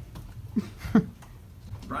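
A person's voice making two short, sliding squeak-like sounds about half a second apart, the second louder, in a lull in the room.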